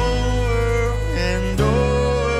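Live country band playing an instrumental break, with a fiddle leading in held, sliding notes over acoustic guitar and the band.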